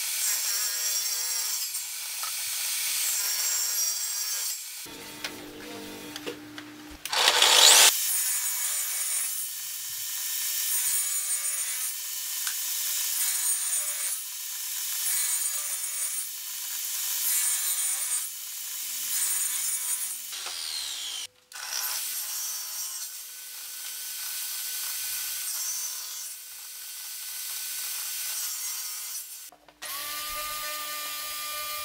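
Benchtop table saw running and ripping pallet-wood boards in several passes, the cutting noise swelling and easing every few seconds. The loudest cut comes about seven seconds in, and the sound breaks off briefly twice in the second half.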